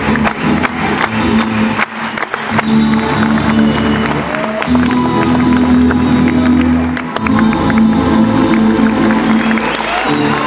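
Live rembetiko music from an ensemble of bouzoukis, baglamas and guitars with a bass line, many plucked-string notes over sustained tones, heard from the audience seats.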